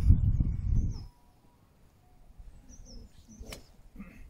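Wind buffeting the microphone for about the first second, then faint bird chirps and a single sharp crack of a driver striking a golf ball off the tee about three and a half seconds in.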